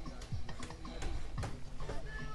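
Hammer blows on the timber roof frame: sharp, irregular knocks, about one or two a second.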